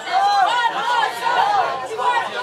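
Several people chattering at once, their voices overlapping into lively talk with no clear words.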